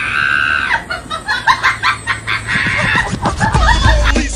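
A shrill, drawn-out cry for the first second, followed by more choppy shrill calls. A hip-hop beat with deep bass comes in near the end.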